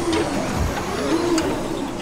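Sound-designed logo sting: a sustained whoosh carrying two low wavering tones, fading toward the end.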